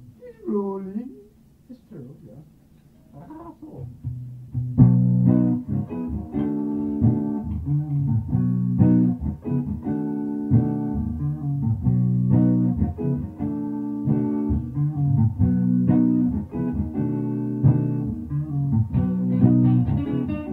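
A brief voice, then a lull, then guitars start playing about five seconds in, strumming chords in a steady rhythm.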